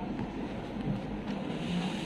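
Steady room noise: an even hum and hiss, with no distinct events.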